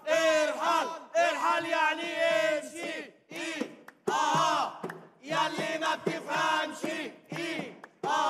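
A group of voices chanting protest slogans in unison, in short shouted phrases with brief breaks between them.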